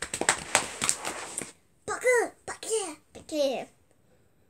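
About a second and a half of rapid, noisy tapping and rustling, then a child's voice giving three short drawn-out vocal sounds.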